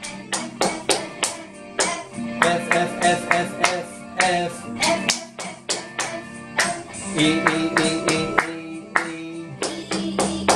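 Hand claps in a steady rhythm along with voices singing the melody of a simple children's guitar piece over a music backing track.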